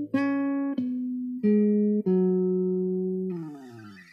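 Electric bass guitar played solo: a short phrase of single plucked notes stepping down in pitch, the last note held for over a second before sliding down and fading near the end.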